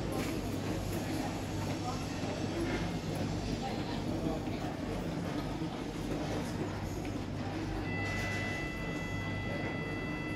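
A steady low hum, and about eight seconds in a steady high electronic tone from the 1999 Oakland lift sounds and holds for several seconds, just before its doors close.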